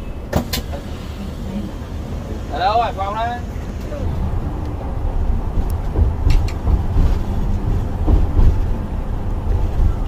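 Coach bus engine and road noise heard from inside the cabin: a steady low rumble that grows louder in the second half as the bus drives down into an underpass.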